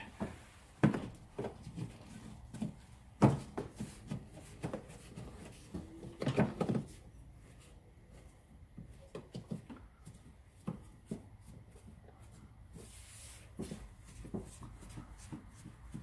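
Rubber hood weatherstrip being pressed back onto the edge of a car's plastic cowl panel by a gloved hand: scattered soft clicks and knocks, with louder knocks about one and three seconds in and a short cluster of handling noise around six seconds in.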